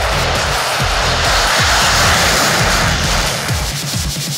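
Electronic music with a steady deep beat, over the roar of two F-16 fighter jets taking off in formation; the jet noise swells to its loudest about two seconds in, then eases off.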